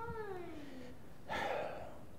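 A faint voice making one long vocal sound that slides down in pitch over about a second, followed by a short breathy noise.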